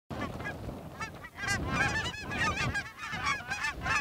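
A large flock of lesser Canada geese calling in flight overhead: many overlapping honks and yelps at once, with a low wind rumble on the microphone.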